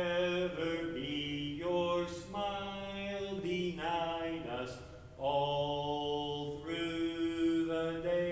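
A man's voice chanting liturgy solo, holding long sustained notes in a steady line with short breaks for breath.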